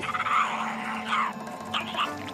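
Added feeding sound effects for a long-jawed jumping spider chewing its skewered prey: a rasping texture with a couple of downward sweeps. A steady low music drone runs underneath.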